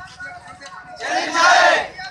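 A crowd of protesters shouting a slogan together: quieter voices at first, then a loud unison shout about a second in that lasts about a second.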